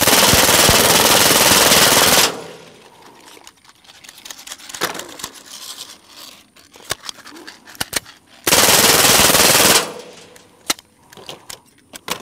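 Suppressed full-auto .22 LR AR (CMMG .22 upper with a KG Made Swarm titanium suppressor) firing one continuous burst of about two and a half seconds. A few light clicks follow, then a second, shorter burst of about a second near the end. The gun is still running under sustained fire in a meltdown test.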